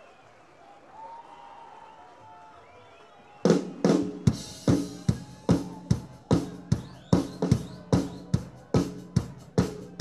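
Faint crowd murmur, then about three and a half seconds in a rock drum kit starts a steady beat of bass drum and snare, about two and a half hits a second, with cymbals over it: the drum intro to the next song, on an audience recording.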